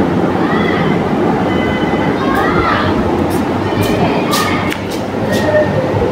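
Steady rumbling noise with faint voices in the background.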